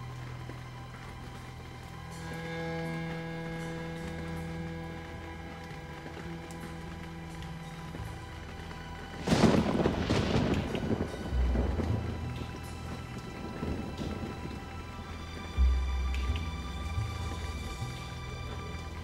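Slow, sustained score music with long held notes. About halfway a loud, noisy crash breaks in and rumbles away over a couple of seconds, followed by two deep booms.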